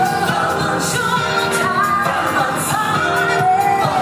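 A woman singing into a microphone over pop-style musical accompaniment, amplified through a stage sound system, with held notes that bend in pitch.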